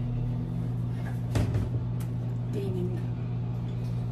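Microwave oven running with a steady low hum, with one sharp knock about a second and a half in.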